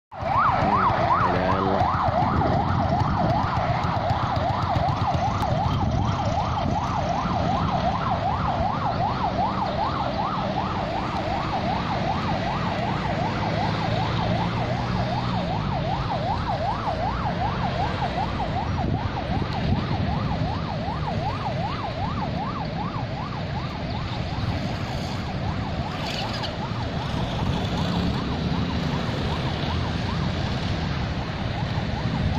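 Vehicle siren sounding a fast yelp, its pitch sweeping up and down about three or four times a second. Car engines run low underneath. The siren grows somewhat fainter near the end.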